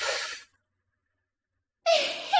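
A breathy exhale like a sigh, fading out within about half a second. Then silence, until a high-pitched giggle starts just before the end.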